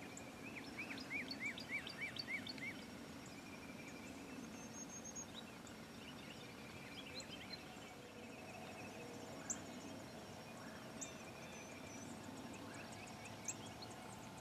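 Wild turkey calling near the start: a quick run of about eight yelping notes, roughly four a second. Faint high songbird chirps and a few sharp ticks follow over a steady outdoor background.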